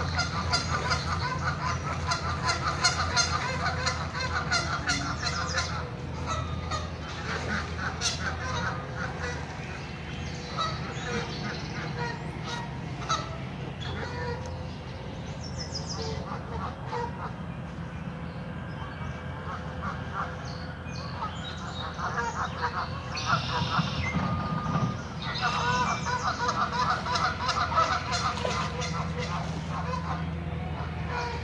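Geese honking in rapid clusters of short calls, busiest in the first few seconds and again near the end, with scattered honks in between, over a steady low hum.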